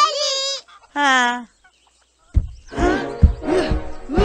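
Two short pitched cries, one at the very start and one about a second in, then after a brief pause background music with a steady beat comes in.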